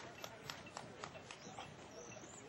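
Faint, evenly spaced percussion taps, about three or four a second, as a marching band's percussion quietly opens its show.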